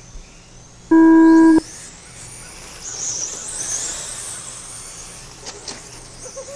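A loud electronic start tone sounds once for under a second, about a second in. Then the high whine of radio-controlled late-model race cars' electric motors rises as they accelerate away, loudest around three to four seconds in.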